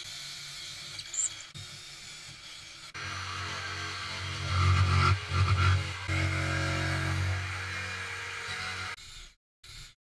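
Power tools working plywood: a drill for the first few seconds, then a jigsaw running steadily from about three seconds in, loudest midway. The jigsaw cuts off shortly before the end, leaving brief snatches of tool noise.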